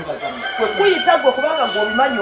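A rooster crowing once in one long drawn-out call, about a second and a half long, starting about half a second in, over people talking.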